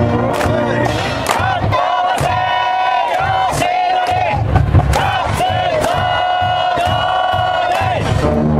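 A high school baseball cheering section in the stands: massed voices chanting long, drawn-out calls over a steady drum beat.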